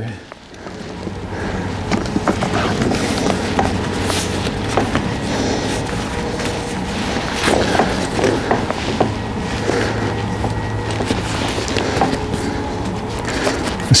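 A stiff leather latigo strap being handled and threaded through a saddle's metal D-ring and keeper, making soft rustles and light clicks. Under it runs a steady low hum that swells up in the first two seconds.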